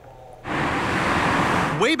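Cars driving past on a road: a steady rush of tyre and road noise that starts suddenly about half a second in.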